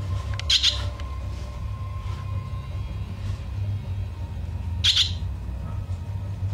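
A fledgling songbird gives two short, high begging calls about four seconds apart, the sign of a hungry chick waiting to be fed, over a steady low hum.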